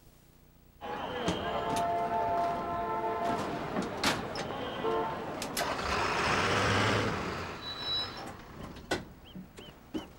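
Delivery truck sounds that start suddenly about a second in: a vehicle running, with several sharp knocks and a burst of hiss around the middle.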